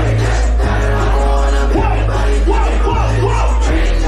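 A live rap set played loud through a club PA: deep, sustained bass notes under shouted vocals.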